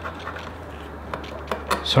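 Pencil drawing a line on a glazed porcelain tile along a plastic speed square: a few faint, short scratches and clicks.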